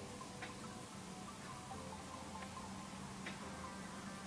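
Quiet room tone with a faint steady low hum and three soft ticks, spaced unevenly.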